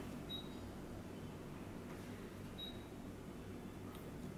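Quiet room tone with a faint steady low hum, broken twice by a faint, short, high-pitched beep.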